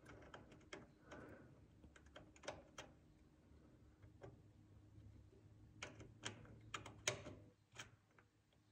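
Faint, irregular clicks of an M12x1.25 hand tap being turned in a freshly tapped drain hole in a Hydro-Gear EZT 2200 transmission case, re-chasing threads that a bolt did not grab well. The clicks come in small clusters over near silence.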